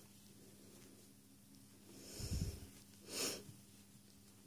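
Quiet room with a faint steady hum; a soft low thump a little after two seconds, then a short breath out through the nose, like a sniff or snort, just after three seconds.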